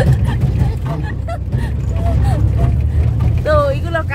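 Low, steady engine and road rumble inside a moving minibus cabin.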